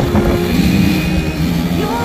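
Small quad bike (ATV) engine running as it is ridden, its pitch rising briefly near the end.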